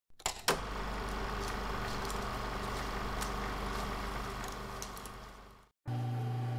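A couple of sharp clicks, then a steady mechanical running sound with a low hum that fades out near the end.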